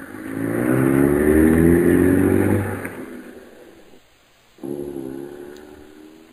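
Radio-drama sound effect of a truck engine revving up and pulling away, rising in pitch and then fading out. About halfway through, a second vehicle engine starts up and fades in its turn.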